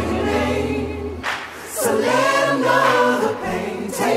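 Music: layered, choir-like vocal harmonies. The low bass stops about a second in, leaving the voices nearly unaccompanied.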